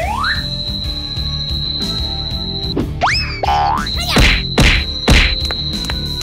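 Cartoon sound effects over background music: a rising boing-like glide at the start, a steady high-pitched tone, another glide about three seconds in, then three hard whacks in quick succession near the end.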